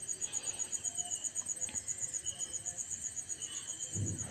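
A cricket chirping steadily in the background: a fast, even run of high-pitched pulses.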